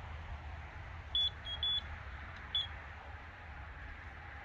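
Electronic carp bite alarm beeping: three quick high beeps about a second in, then one more a second later.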